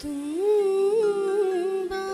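A woman singing one long wordless vocal line into a microphone: the pitch starts low and slides upward, then holds with small ornamental turns, over a faint steady accompaniment.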